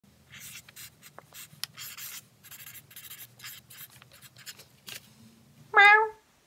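Marker pen writing on paper: a series of short scratching strokes as a word is written out. Near the end, a short loud tone rises in pitch and holds briefly.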